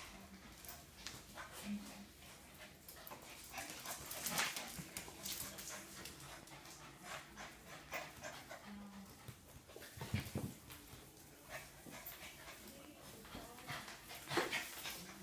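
Two dogs, a Cavalier King Charles spaniel and a puppy, play-wrestling on a tile floor: claws clicking and scrabbling on the tiles, with short dog noises now and then and a louder bump about ten seconds in.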